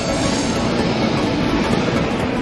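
Passenger coaches hauled by a DB Class 101 electric locomotive passing close by at speed: a steady rolling noise of wheels on rails.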